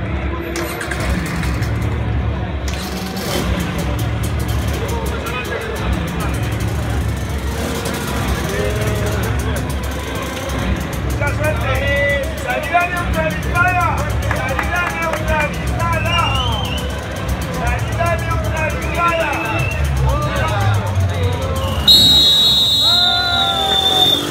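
Race start crowd sound: an amplified voice and music over the low running of a lead enduro motorbike idling at the front of the pack. About two seconds before the end, a loud steady horn sounds as the start signal.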